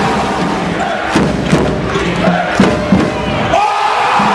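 Basketball arena crowd chanting and cheering, with several sharp thuds about a second apart in the middle.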